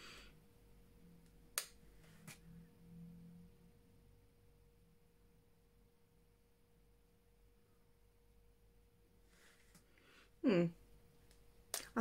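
Quiet room with a faint steady hum, broken by a couple of small clicks about a second and a half and two seconds in. About ten seconds in comes one short pitched vocal sound.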